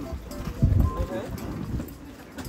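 Footsteps on wet asphalt, with a heavier low thump of steps about half a second to a second in, over people talking in the background.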